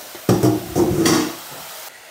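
Metal spoon stirring canned corn into sliced mushrooms in a stainless steel pot, scraping and clinking against the pot for about a second. Then a faint sizzle of the butter frying.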